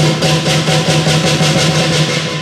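Lion dance percussion band playing a quick, even beat: hand cymbals clashing over the lion drum, their ringing blending into a continuous wash.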